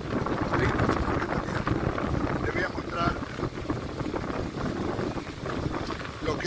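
Strong wind buffeting the microphone in an uneven low rumble, with people's voices in the background.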